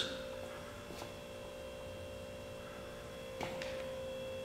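Quiet room tone with a faint, steady electrical hum holding at one pitch, and a faint tick about a second in.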